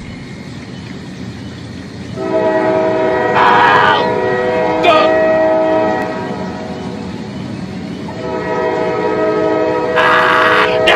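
Diesel locomotive's horn sounding a long, steady multi-note blast from about two seconds in, easing for a moment after the middle and swelling again near the end, over a low rumble. Short bursts of rushing noise break in twice during the first blast.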